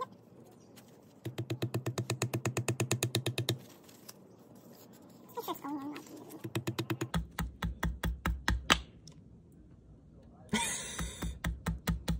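Air hammer with a flat punch tapping a new axle seal into a Miata rear differential housing, in three short runs of quick strikes, about ten a second, with pauses between.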